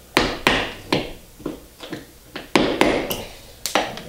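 A wooden mallet striking a tack remover about ten times in irregular sharp knocks, some in quick pairs, driving the blade under upholstery tacks to lift them out of a chair's wooden frame.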